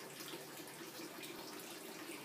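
Faint, steady hiss of a storm outdoors, with the noise of wind-tossed palm trees and foliage.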